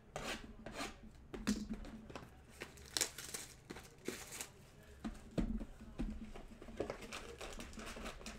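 Sports-card pack wrappers being torn open and crinkled, with scattered light clicks and taps of cards and packaging being handled.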